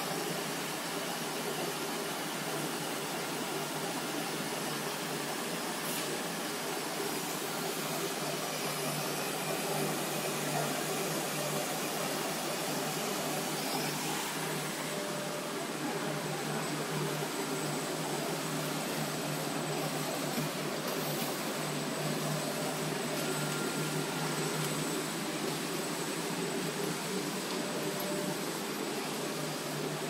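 Automatic folder-gluer for corrugated cardboard boxes running steadily, its belts and rollers carrying blanks through: an even mechanical whirr with a low hum and a faint high whine.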